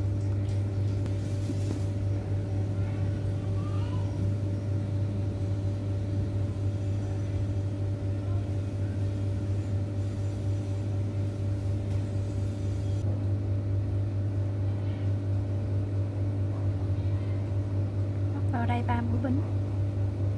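A steady low hum with a few fixed higher tones over it, from a motor or electrical appliance running in the room, unchanged throughout.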